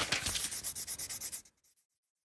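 Scratchy scribbling sound effect of rapid rubbing strokes, about ten a second, fading away and stopping about one and a half seconds in.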